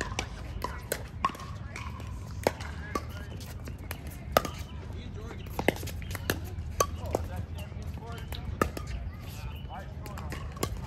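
Pickleball paddles striking the plastic ball and the ball bouncing on the hard court during a rally: a run of sharp pops at irregular intervals, the loudest about four seconds in, over a steady low rumble.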